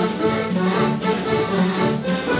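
Live folk dance band playing dance music with a steady, even beat.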